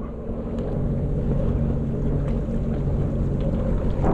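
Steady low rumble with a faint even hum from a Sea-Doo Fish Pro fishing jet ski idling while drifting, mixed with wind buffeting the microphone.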